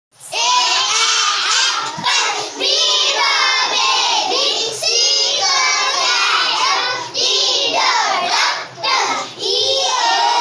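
A group of young children singing an alphabet-sounds action song together in unison, loud and continuous, with brief breaks between phrases.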